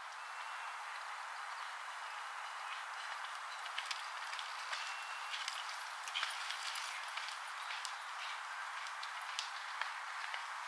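Hoofbeats of a horse galloping cross-country on a dirt track, heard as irregular sharp knocks from a few seconds in, over a steady rushing hiss.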